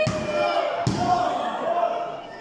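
Two sharp slaps on the wrestling ring canvas, one at the start and one a little under a second later, as in a referee's pin count. Spectators are shouting over them.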